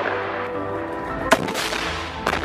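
Background music with steady held tones, and about a second and a half in a single sharp blast with a short echo as a weapon fires or a round explodes in a combat zone.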